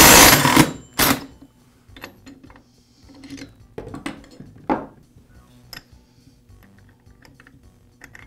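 DeWalt cordless impact driver hammering for about a second on a clutch removal tool, spinning the chainsaw's clutch off the crankshaft, with a second short burst just after. The engine's compression alone keeps the crankshaft from turning. Scattered light clicks and knocks follow as the loosened clutch parts are handled.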